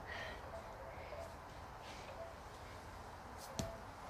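Faint outdoor garden ambience with a low rumble, and one sharp click about three and a half seconds in.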